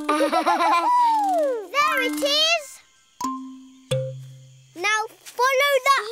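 Children's cartoon soundtrack: a baby's wordless babbling and squeals over light music. About a second in, a sound effect glides down in pitch and back up.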